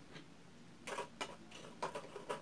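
A few sharp clicks and taps of hard plastic in the second half, after one faint tap near the start: a detergent bottle and its measuring cap being handled and set down on a table.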